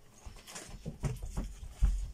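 Irregular light taps and rustles of sweets and wrappers being handled on a table, with a heavier dull thump near the end.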